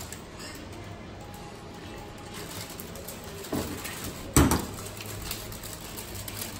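Low, steady room background, then one sharp knock about four and a half seconds in as a stemmed glass of gin and tonic with ice is set down on a stainless-steel counter.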